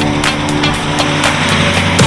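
Background music, over a vintage station wagon driving past, its engine and tyre noise growing louder toward the end.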